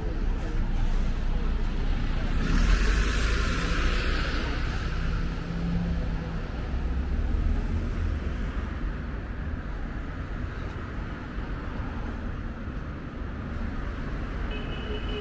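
A double-decker sightseeing bus driving past close by: its engine rumble and tyre noise build to a peak about three seconds in, then fade into steady street traffic.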